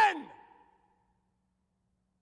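A man's voice ends a spoken word with a falling pitch and fades out within about half a second, followed by dead silence.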